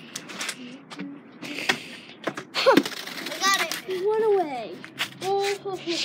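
A child's voice making several drawn-out, wordless calls that rise and fall in pitch, one swooping up high about halfway through, with a few light knocks and clicks in between.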